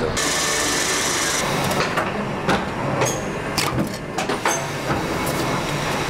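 Printing machinery running in a print shop: a dense mechanical clatter with a burst of hiss in the first second or so, then repeated sharp clacks.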